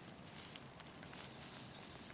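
Faint rustling of grass with a few soft crackles about half a second in, as a hand grips a birch bolete at its base to pick it.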